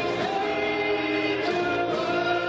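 Music: several voices singing together in held notes in a stage musical.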